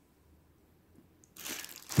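Quiet for over a second, then a plastic bag crinkling and rustling as it is handled, building over the last half second.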